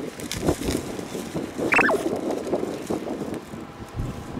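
A person chewing a crunchy sandwich cookie, heard as soft irregular crunches over outdoor background noise, with one short falling chirp about two seconds in.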